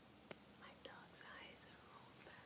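Faint whispering, with a soft click just before it.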